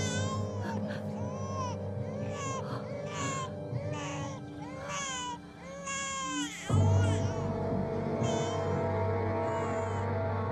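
Newborn baby crying in short, repeated rising-and-falling wails over background music. About seven seconds in, a deep low hit sounds in the music, and the crying then dies away under sustained music.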